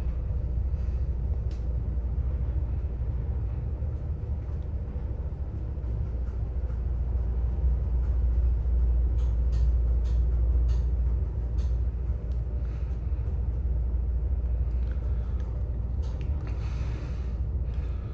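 Fujitec elevator car travelling down its shaft: a steady low rumble of the ride, a little louder in the middle of the trip, with a few faint clicks.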